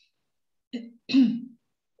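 A person clearing their throat once, about a second in: a short catch followed by a longer voiced 'ahem'.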